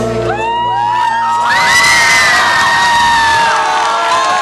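A crowd of schoolchildren cheering and screaming, loudest in the middle. The band's music breaks off about a second in.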